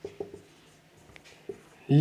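Marker pen writing on a whiteboard: a few short, separate strokes of the tip on the board.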